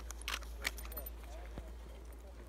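Faint distant voices over a steady low rumble, with two short crunching clicks in the first second.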